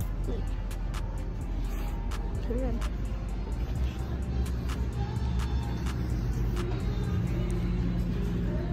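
Street noise with a steady low rumble and road-vehicle sound, crossed by regular clicks about three a second, with faint voices and music in the background.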